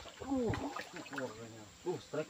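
Voices calling out in several short exclamations.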